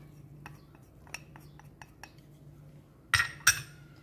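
Light clinks of a utensil against a small ceramic dish as minced garlic is scraped out of it into a pot: a run of faint clicks, then two louder knocks about half a second apart near the end.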